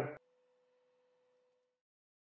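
The tail of a man's narration, then near silence with a very faint steady tone that stops shortly before the end.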